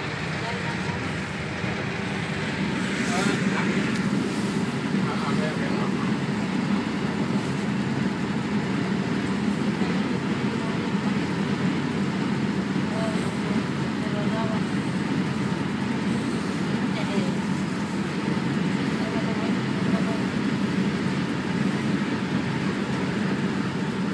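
A transit bus cruising at highway speed, heard from inside the passenger cabin: a steady low engine drone with road and tyre noise.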